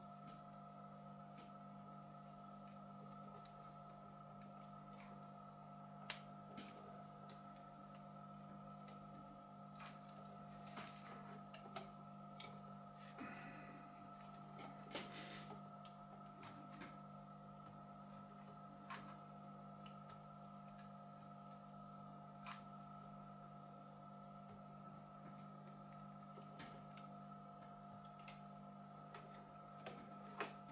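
Near silence with a steady faint hum and scattered light clicks and taps as a hot glue gun and the soldering station's plastic front panel are handled, most of them between about 10 and 17 seconds in.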